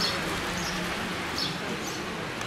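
Small birds chirping: short, high calls that drop in pitch, several in quick succession, over steady outdoor background hiss and a faint low hum.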